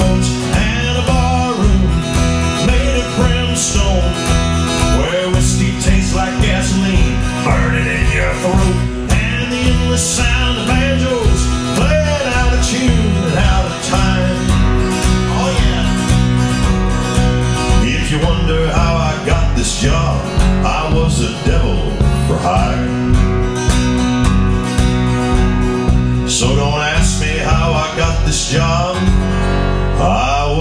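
Live country music: a steel-string acoustic guitar strummed in a steady rhythm, with a male voice singing along at times.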